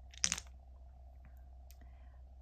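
A brief clatter of twelve-sided plastic astrology dice, shaken in cupped hands and cast onto the table, about a quarter second in. After that only a faint steady hum remains.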